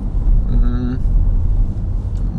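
Steady low road and engine rumble inside a moving car's cabin. About half a second in, a short held vocal "uh" sounds over it.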